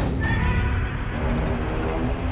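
Godzilla roar sound effect: one long, drawn-out pitched call, over dramatic background music.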